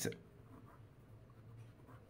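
Faint scratching of a pen writing words by hand on a workbook page.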